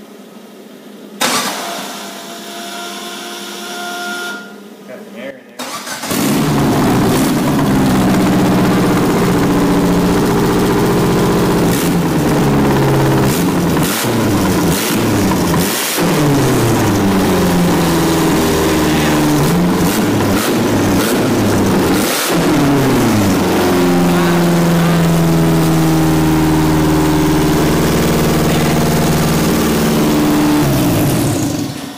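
Four-cylinder car engine in a riding lawn mower cranking on its starter for about five seconds, then catching and running for its first startup once the cam sensor has been sorted to give spark. The revs rise and fall a few times, then it settles to a steadier run over the last several seconds.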